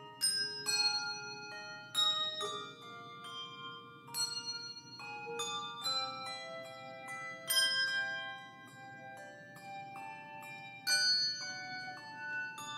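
Handbell choir playing a slow, reflective piece: chords struck about every two seconds, with lighter notes between, each note ringing on and overlapping the next.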